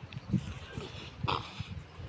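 Men grunting and breathing hard with effort as they grapple on the ground in a lock, in short uneven bursts, the sharpest a little over a second in.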